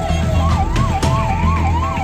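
Emergency vehicle siren: a slow falling wail that switches about half a second in to a quick up-and-down warble, about two and a half cycles a second, over a low engine hum.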